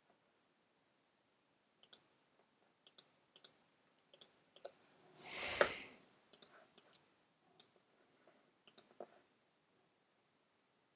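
Computer mouse clicking at an irregular pace, several clicks in quick pairs, while blend modes are picked from a menu. Around the middle there is a short swell of hiss that rises and fades, louder than the clicks.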